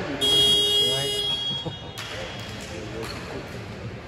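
An electronic buzzer sounds once for about two seconds, starting and cutting off sharply and echoing in the large hall. Voices of players and spectators can be heard beneath it.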